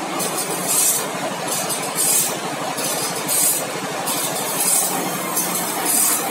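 Automatic band-saw blade sharpener running, its grinding wheel biting one tooth at a time: a short, high grinding hiss about every second and a quarter, over the steady hum and clatter of the motor and tooth-feed mechanism.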